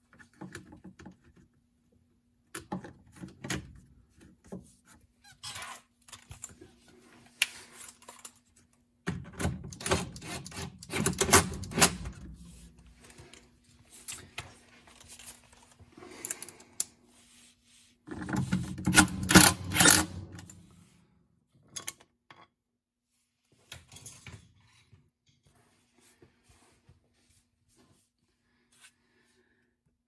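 Plastic cover being handled and fitted over a washing machine's drive motor, with clicks and knocks, and a cordless drill-driver run in two bursts of two to three seconds, about nine and eighteen seconds in, fastening the cover. A faint steady hum sits underneath.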